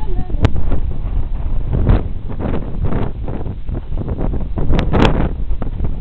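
Wind buffeting a handheld camera's microphone as it moves, a loud, uneven rumble with gusts, broken by sharp clicks about half a second in and again near five seconds.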